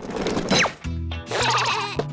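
Cartoon soundtrack: a falling whistle-like glide about half a second in, then children's music starts, with a warbling tone over it near the end.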